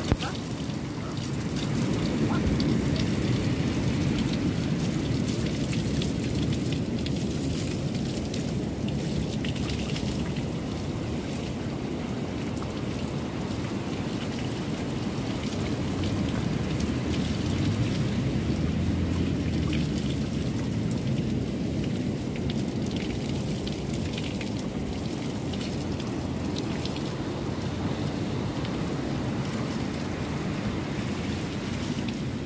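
Open-air beach shower running, its water splashing steadily onto a person standing beneath it and onto the paving below.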